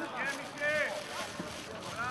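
Voices shouting out on the pitch during play: a few short calls in the first second, over the open-air noise of the ground.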